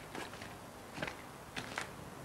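A few faint footsteps over a quiet background hiss.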